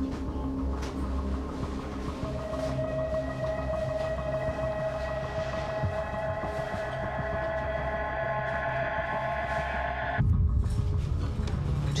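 Tense background score: a low throbbing drone with sustained held tones that come in about two seconds in and cut off abruptly near ten seconds, leaving a heavier low rumble.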